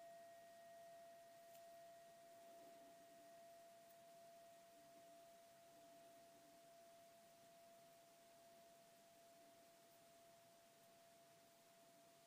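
Near silence: room tone with a faint, steady pure tone that slowly fades.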